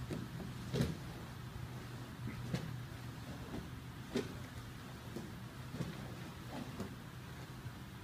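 Soft, scattered thumps and rustles of two grapplers in cotton gis shifting and dropping their weight on foam mats, roughly once every second or two, over a steady low hum.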